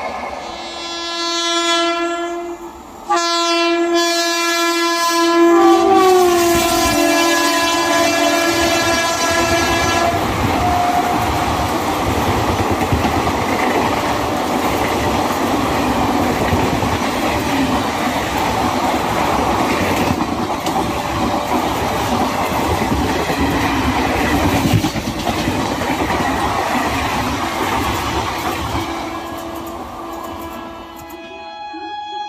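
Indian Railways locomotive horn blowing long and loud, cutting off abruptly and starting again about three seconds in, then sliding down in pitch about six seconds in as the train passes. Then a long express passenger train rushes past at full speed, its wheels clattering rapidly over the rail joints, until near the end.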